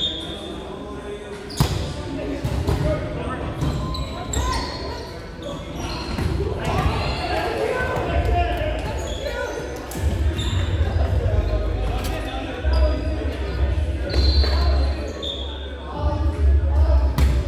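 Gymnasium ambience in a large echoing hall: balls bouncing and knocking on the hardwood floor, short sneaker squeaks, and voices chattering. A low rumble joins about ten seconds in.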